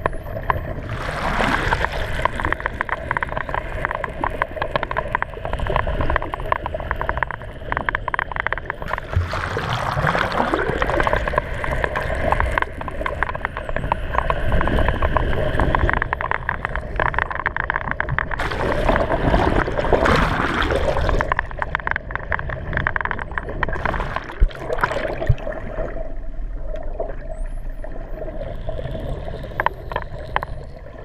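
Underwater sound of a dolphin pod: whistles sweeping up and down in pitch, several overlapping at a time in a few bouts, over rapid clicking, with a steady hum underneath.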